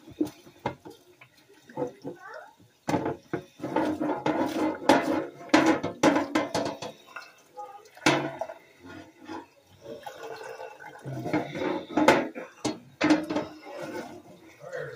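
Dishes being washed by hand at a kitchen sink: tap water splashing while dishes and a pan clatter and knock against each other in irregular bursts.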